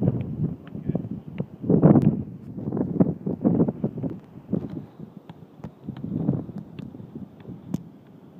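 Wind buffeting the microphone in uneven gusts, loudest about two seconds in, with scattered sharp ticks over it.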